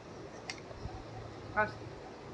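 Quiet eating sounds as a person takes a spoonful from a plastic cup: a light click of the spoon about a quarter of the way in, then a brief pitched mouth or voice sound past the middle.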